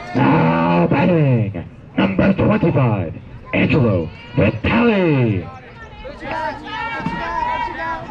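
People shouting: several loud, drawn-out calls, each sliding down in pitch, over the first five seconds or so, then quieter chatter of voices.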